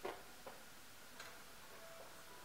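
Blitz chess play: wooden chess pieces set down on a wooden board and the chess clock's button pressed, heard as a few sharp knocks, the loudest at the start, then a smaller one about half a second later and a faint one past a second in.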